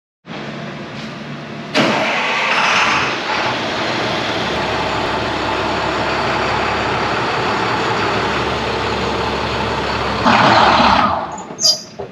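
International 4300's DT466 inline-six diesel engine cranking and catching about two seconds in, then running steadily. It gets louder for about a second near the end, then drops away.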